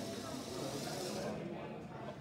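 Indistinct background voices over a steady noise haze in a large room; the hiss in the noise falls away about a second in.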